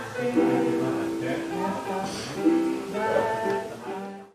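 Electronic keyboard playing a slow, simple melody, one sustained note after another, by a beginner student.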